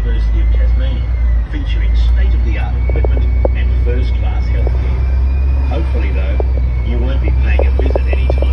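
Tour bus driving through city traffic, heard from its upper deck: a loud, steady low rumble with a faint high whine over it, and people talking indistinctly.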